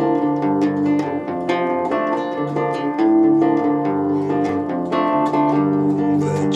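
Classical-style nylon-string guitar fingerpicked solo, playing an instrumental intro in C. Single notes and chord tones are plucked at an even pace, about two to three a second, and let ring.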